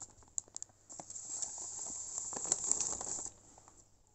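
Paper envelopes rustling, with a few light clicks, as a pattern envelope is slid in among a row of others; the rustling stops just after three seconds.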